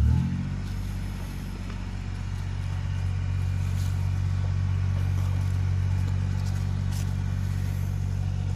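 A motor running steadily with a low hum, its pitch bending briefly right at the start.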